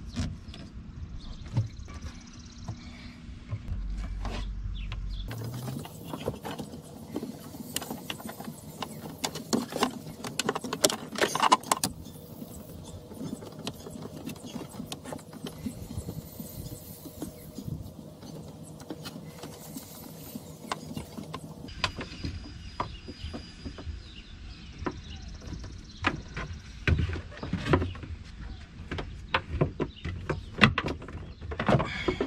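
Heavy 1/0 battery cables being handled and pushed into place by hand, with irregular rustling, clicks and knocks of cable and hands against the boat's hull and fittings.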